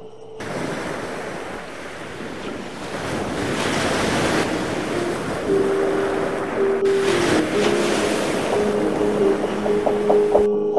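Ocean surf and wind noise, starting about half a second in and growing louder over the first few seconds. Sustained music notes come in about halfway through.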